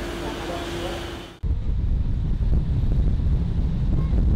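Low, steady rumble of car road noise, starting abruptly about a second and a half in. Before it comes a faint steady hum with soft background voices.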